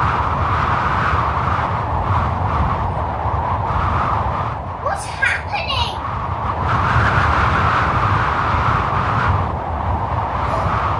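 Steady rushing wind, a sound effect for the great wind of Pentecost, with a short rising whoosh about five seconds in.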